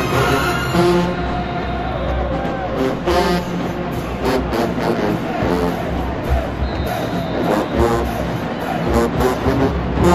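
HBCU marching band playing in the stands: brass chords briefly, then the horns drop back while drums keep the beat under band members' voices, and the full brass comes back in at the end.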